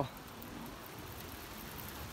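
Light hail and drizzle falling on a car and the ground: a faint, steady patter with a few small ticks.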